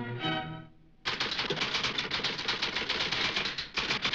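A short phrase of music ends under a second in. Then a typewriter clacks out a rapid run of keystrokes for about three seconds, with a brief pause near the end.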